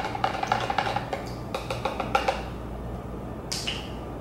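A plastic measuring spoon stirring tea in a plastic shaker cup, rapid light clicking against the cup's sides for about two seconds, then quieter. A short sound near the end as the spoon is set down on the counter.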